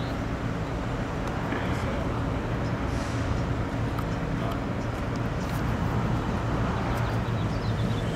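Steady low outdoor rumble and hum, with faint, indistinct voices in the distance.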